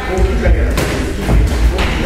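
Dull thuds of youth sparring: gloved punches and kicks landing on padded protectors, with feet on a wooden floor, a few in quick succession in the second second. Voices chatter in the background.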